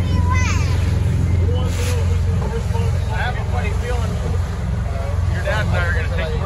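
Boat engine running with a steady low rumble, mixed with wind on the microphone, under intermittent voices.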